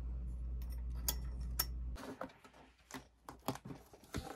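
A steady low hum that cuts off suddenly about two seconds in, with a few sharp clicks over it, then scattered light clicks and rustles of hands handling small objects on a desk.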